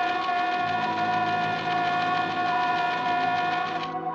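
Dramatic orchestral film score: a loud, held chord over a fast, even pulsing, with low notes coming in about half a second in. The upper part breaks off sharply just before the end.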